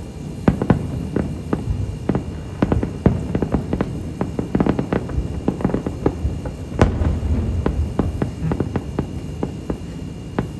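Distant fireworks display: aerial shells bursting in an irregular string of booms and crackles over a low rumble, with one sharper crack about seven seconds in.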